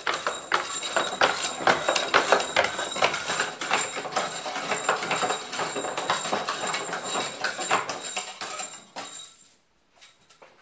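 Hand-cranked wooden slinky escalator running: an irregular clatter of wooden knocks and clicks, several a second, as the steps cycle and the slinky flops down them. It fades out about nine seconds in.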